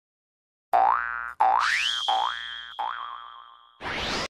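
Cartoon intro sound effects: four springy boings, each rising in pitch and dying away, with a rising whistle that settles into a steady high tone, ending in a whoosh just before the end.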